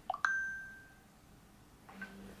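A short electronic chime from a smartphone's WhatsApp chat: a quick run of rising notes ending in a ringing ding that fades out within about a second, with a fainter second blip near the end.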